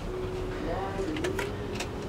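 A few light clicks from a cabin door's keycard lock and handle as the door is unlocked, over a faint held tone that wavers slightly in pitch.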